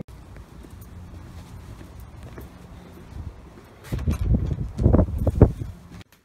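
Footsteps walking on brick paving, with low rumbling noise on a phone's built-in microphone that grows into heavier uneven thuds for a second or two near the end.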